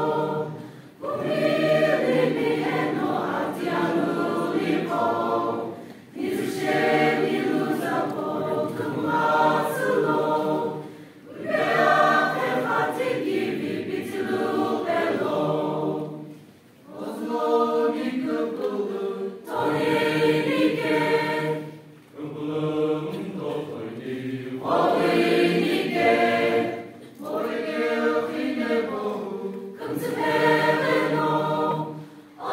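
Mixed choir of women's and men's voices singing together, in phrases of a few seconds with brief breaks between them.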